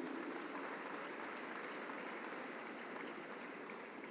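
Audience applauding, the clapping gradually fading away.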